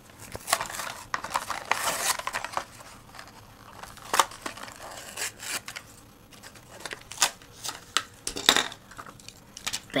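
A Hot Wheels blister pack being torn open by hand: plastic blister and cardboard backing crinkling, tearing and snapping. It is a dense run of crackles for the first couple of seconds, then single sharp cracks every second or so.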